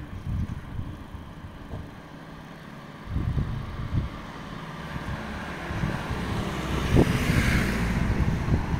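Road traffic: a car going along the street, its tyre and engine noise swelling over the last few seconds over a low rumble.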